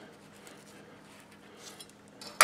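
Faint sounds of a chef's knife cutting through an avocado and riding around its pit as the fruit is turned, with a few soft scratchy sounds near the end.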